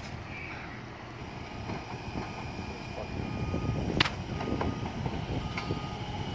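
Rail vehicle rumbling along the yard tracks as it approaches, growing louder, with a sharp clank about four seconds in.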